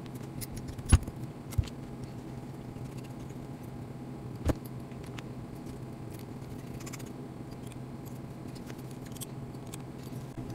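A small hex driver and tiny screws clicking against a 1:28-scale RC car chassis as the aluminium shock mount is screwed on: a few sharp clicks in the first two seconds and one more about halfway through, over a low steady hum.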